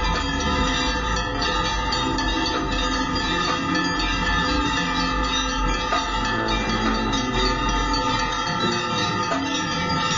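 Many bells ringing together without a break during the Ganga Aarti, their ringing tones overlapping into a continuous, dense peal.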